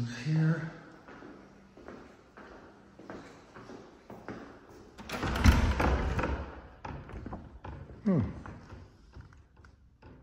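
Footsteps along a hallway, then a door's lever handle and latch clicking and the door pushing open with a thud about five seconds in; that is the loudest sound.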